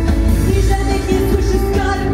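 A woman singing held notes into a microphone over loud amplified music with a heavy bass.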